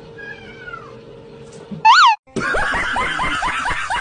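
Cats meowing: a faint falling meow near the start, one short loud meow about two seconds in, then a fast run of repeated yowls, about five a second.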